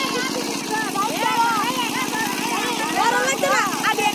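A small engine running steadily with an even pulsing drone, under several people's voices talking over one another.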